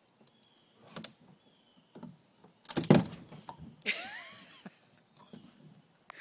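A few scattered knocks and a loud clatter near the middle, then a brief creaking squeal, over a steady high drone of crickets.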